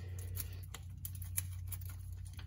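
Faint light ticks and taps of a spark plug socket being worked down into the plug area by hand, with one slightly louder click about one and a half seconds in, over a steady low hum.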